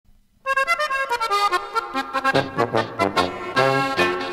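An Oberkrainer polka opens with a quick downward accordion run. About two seconds in, the band comes in with bass notes and builds to a held chord near the end.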